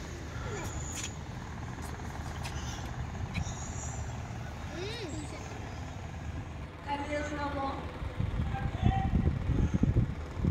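Steady low rumble of a moving road vehicle heard from inside it. People's voices talk over it in the last few seconds.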